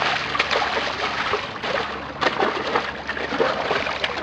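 A stingray thrashing at the water's surface as it is hauled up by hand, the water splashing and sloshing in irregular bursts.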